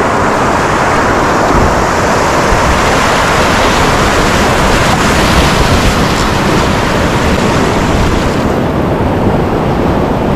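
River rapid: white water rushing and churning around a kayak's hull as it runs down through the broken water. A loud, steady rush with no distinct splashes, turning a little duller near the end.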